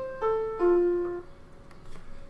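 Piano playing three notes one after another, each lower than the last, that ring and fade within about a second. They match the opening chord of the score (C, A, F), the starting pitches given before the choir sings.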